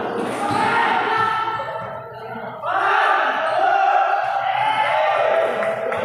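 Basketball game on a concrete court: players shouting and calling out over the ball bouncing, echoing in a large hall under a metal roof. The shouts grow louder from about two and a half seconds in.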